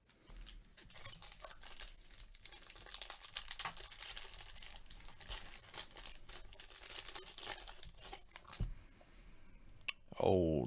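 Foil trading-card pack wrapper being torn open and crinkled by hand: a dense, continuous run of crackles that stops with a soft thump near the end.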